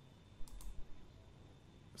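Two quick computer mouse clicks about half a second in, a fraction of a second apart, against a faint steady high tone.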